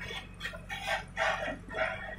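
An animal calling repeatedly, about five short calls in two seconds, over the steady low hum of the backhoe loader's engine running.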